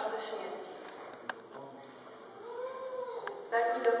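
Speech in a reverberant church trails off into a pause of about three seconds with a few faint clicks; late in the pause a short voice-like whine rises and falls, and then speech starts again.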